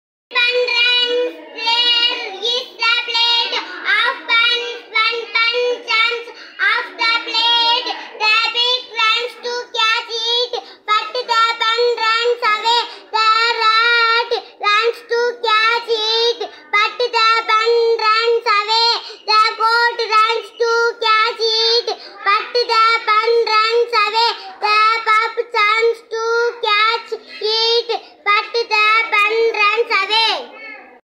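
A young boy reading aloud from a storybook in a high, sing-song chant, one short phrase after another with brief pauses between them.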